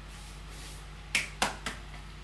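A hand patting a bare stomach three times in quick succession, short sharp slaps about a quarter second apart, the last one softer, over a steady low electrical hum.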